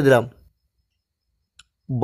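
A man speaking Bengali, with a pause of about a second in which there is one faint short click, then speech resumes near the end.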